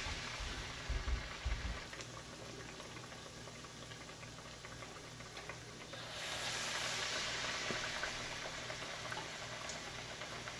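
Batter-dipped cabbage pieces deep-frying in hot oil in a wok, a steady sizzle that grows louder about six seconds in as another piece of batter is dropped into the oil. There are a few low bumps near the start.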